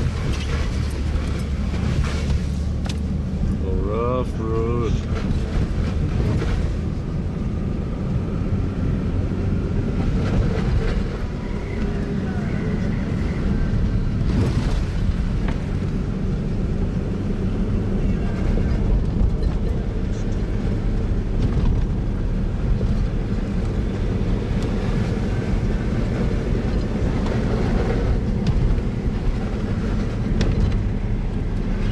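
Steady engine and road rumble heard inside the cabin of a Toyota Land Cruiser FZJ80 driving a rough dirt track. A brief wavering, pitched sound cuts in about four seconds in.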